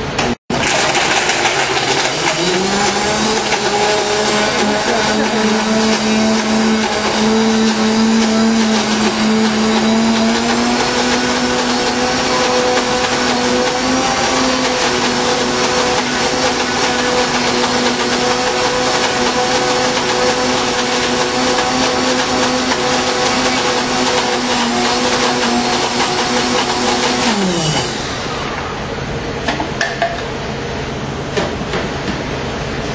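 Countertop blender blending frozen fruit and milk into a smoothie, with no ice added, while its tamper is pushed down into the jar. The motor starts just after the beginning, rises in pitch as it comes up to speed, runs steadily, then switches off near the end and winds down.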